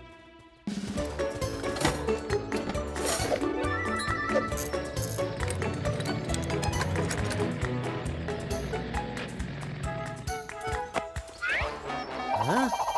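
Lively cartoon background music. It enters suddenly under a second in, with many layered pitched notes and a busy clip-clop percussion beat, and thins out to a few sparse notes near the end.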